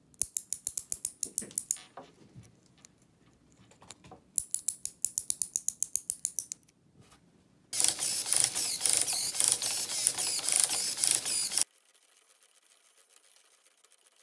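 3D-printed plastic gear turned by hand, clicking in two runs of quick, even ticks. Then a small servo motor drives the plastic gears of a 3D-printed sliding mechanism, running with a dense mechanical rattle for about four seconds before stopping abruptly.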